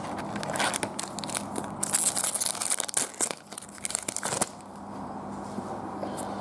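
Foil trading-card pack wrapper being torn open and crinkled, with dense crackling for about four seconds before it goes quieter.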